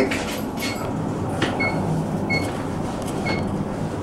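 Otis Elevonic 401 traction elevator car in travel: a steady low hum of the ride, with a short high electronic beep sounding about once a second.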